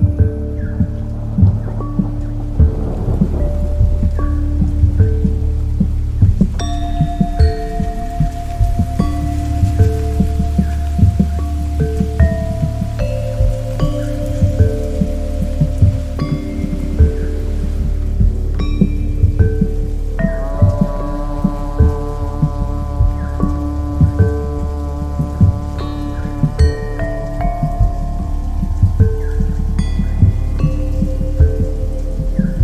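Ambient meditation music over a rain-and-thunder soundscape. Held synth tones and soft chime-like notes sound over a deep, steady drone, with an irregular patter throughout. A new layer of higher held tones comes in about two-thirds of the way through.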